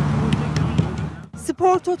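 A steady, noisy background sound with a low hum and a few faint ticks cuts off about a second in. A man then starts narrating a sports news report.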